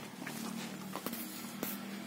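Hand-pushed bicycle-wheel hoe being worked through dry soil: a few sharp clacks and scrapes from its steel frame and tines, over a steady low hum.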